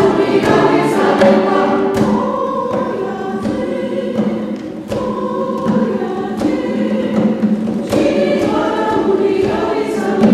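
Church choir singing a Kenyan song in Swahili, several voices together, punctuated by sharp percussive strikes.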